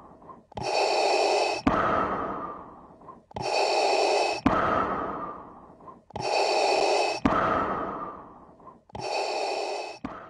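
Darth Vader-style respirator breathing, a mechanical breath repeating about every three seconds: each cycle is a drawn breath, a sharp click, then a fading exhale, four times in all.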